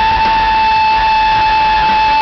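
A male rock singer belting one long, high, steady note at full voice, live in concert.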